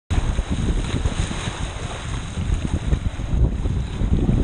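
Rushing water and heavy wind buffeting on the microphone of an action camera carried down a water slide by the rider, a steady gusty rush.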